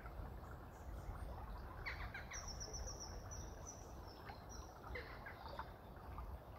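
Small birds calling over a steady low outdoor background noise. There is a burst of quick falling chirps about two seconds in, then a run of high, thin repeated notes, and more chirps near the end.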